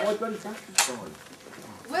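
.177 air rifle firing once, a single short sharp crack a little under a second in, with voices just before and after.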